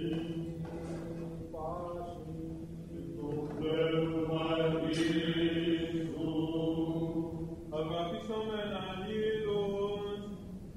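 Byzantine liturgical chant in the second mode (ήχος β'): a solo chanter sings the melody in phrases over a steady held drone (the ison) from other voices. The drone shifts up to a higher note about eight seconds in.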